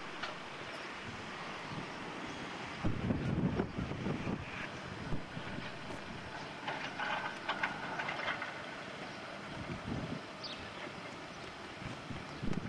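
Wind buffeting the camcorder microphone, with low rumbling gusts that grow stronger about three seconds in. Faint higher-pitched sounds come through in the middle.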